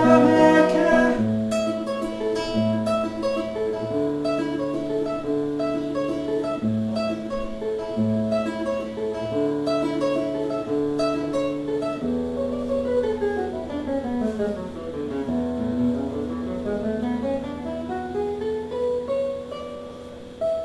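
Nylon-string classical guitar, plugged into an amplifier by cable rather than miked, playing an instrumental passage with no voice. Held notes change about every second, then from about twelve seconds in a run of notes falls and climbs back up over a low held bass note.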